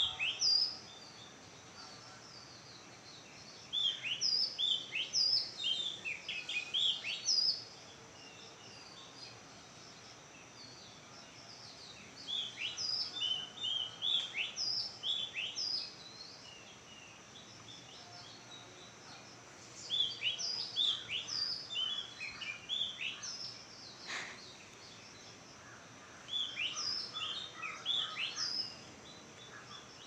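Birds chirping in four bouts of quick, short chirps, each note dropping in pitch, with quieter stretches of background between the bouts.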